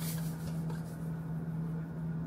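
Salt poured from a cardboard canister into a pot of water, a soft hiss strongest in the first half second, over a steady low hum.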